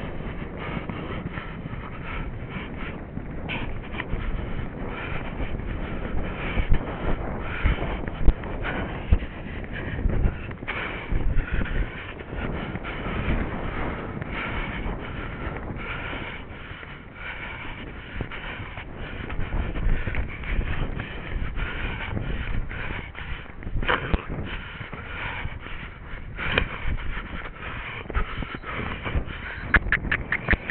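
Horse galloping on a dirt track, heard from a rider's helmet camera: a continuous rumble of hoofbeats mixed with wind rushing over the microphone.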